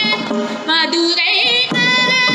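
A woman singing an Indian-style melody, her voice turning in quick wavering ornaments about halfway through, over a steady instrumental drone.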